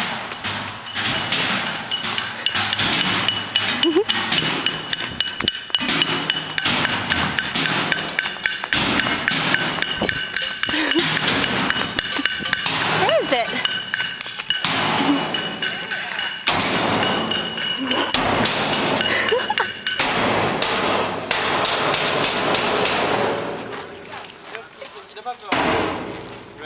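Campers banging and clanging on objects and shouting together to scare off a bear in the campsite: a dense, continuous clatter of strikes with yelling voices and a steady high tone underneath, dying down near the end.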